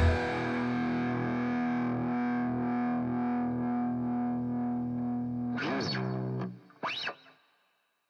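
Distorted Schecter electric guitar's final chord ringing out, steady and slowly fading, then cut off about six and a half seconds in. Two short sweeping glides in pitch come near the end.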